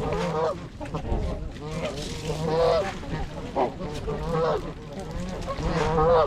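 A flock of Canada geese and trumpeter swans honking, overlapping calls coming every second or so, with the loudest calls near the end.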